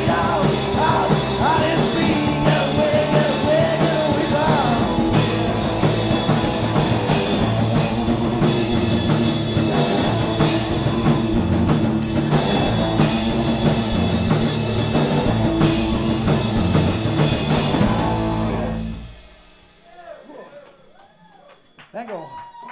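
Punk rock band playing live: distorted electric guitar, bass and drum kit, with a male voice singing over the first few seconds. The song ends about nineteen seconds in and the sound drops away to a quiet room.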